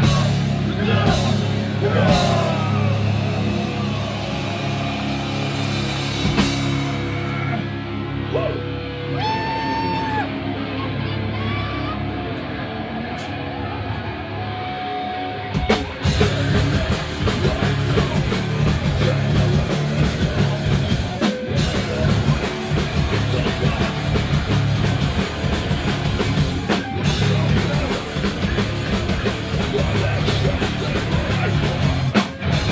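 A hardcore punk band playing live in a small club, with distorted guitar and drum kit. About a quarter of the way in the music thins out to a quieter stretch with a few held tones. Just past halfway the full band crashes back in loud and dense.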